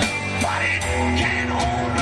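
A rock band playing live: amplified electric guitar over drums, with cymbal and drum hits recurring throughout.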